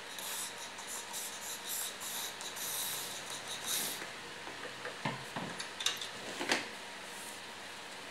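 Skirt fabric rustling and flapping in the draught of a small circulator fan, in irregular bursts over the fan's steady running noise. A few brief taps or knocks come between five and six and a half seconds in.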